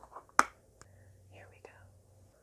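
Plastic container of honeycomb being opened and handled: one sharp plastic snap about half a second in, then a couple of lighter clicks, with soft whispering.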